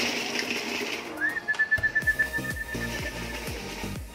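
Homing pigeons cooing around the loft, low falling calls repeating through the second half. A steady high-pitched tone holds for about two seconds from about a second in.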